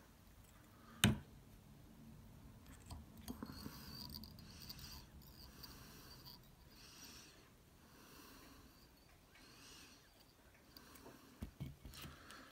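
Faint breathing of a person close to the microphone, swelling and fading every couple of seconds, with a few small ticks of tinsel and thread being handled at the fly-tying vise.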